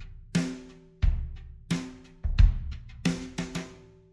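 Drum kit playing a slow groove, kick drum and snare hits alternating about every two-thirds of a second, with the snare ringing after each stroke. The last hits fade out shortly before the end.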